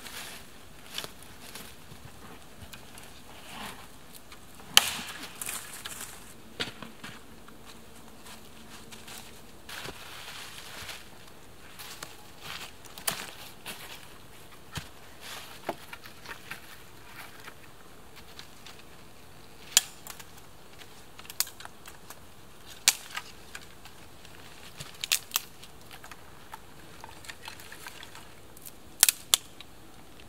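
Dry dead wood snapping and cracking as branches and twigs are broken by hand for firewood, heard as scattered sharp snaps, with sticks knocking together and dry leaf litter rustling.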